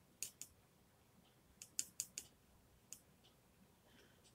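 Faint, scattered clicks of a paintbrush tapping and working light green watercolour in a plastic palette well: a couple early on, a quick cluster around two seconds in, and one more near three seconds.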